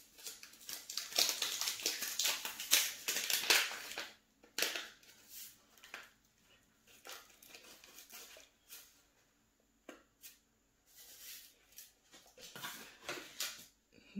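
Paper seed packet crinkling and rustling as it is handled and opened. The rustling is dense for the first four seconds, then thins to a few scattered rustles and small ticks.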